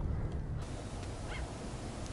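Steady low outdoor background noise, with a short faint bird call a little after one second in.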